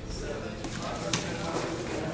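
Grappling partners scuffling and shifting on gym mats, with one sharp slap a little over a second in.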